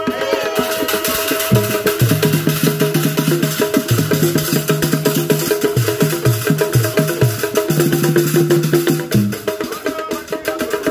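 Live African percussion ensemble: hand drums played in a fast, dense rhythm together with a wooden marimba, with low notes held and changing every second or two.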